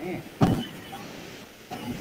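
A short vocal sound about half a second in, then faint steady background hiss on a video-call audio line.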